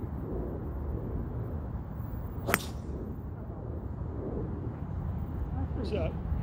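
A driver striking a black matte Volvik Vivid golf ball off the tee: one sharp crack about two and a half seconds in, over a steady low rumble of wind on the microphone.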